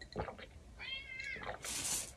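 A cat meowing once about a second in: a short call that rises and falls in pitch. A brief breathy hiss follows near the end.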